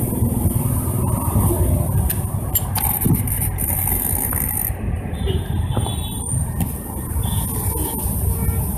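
Steady low rumble of road traffic passing beside the highway, with a few faint clicks about two to three seconds in.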